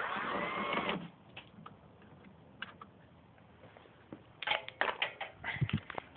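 Ratchet on a flexible extension working a 10 mm headlight-mount screw: a dense burst of rapid clicking in the first second, a few single clicks, then another run of sharp clicks and knocks near the end.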